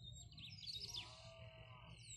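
Faint birds chirping and calling in the open countryside, with a steady high note running from about half a second in and a brief faint pitched call near the middle.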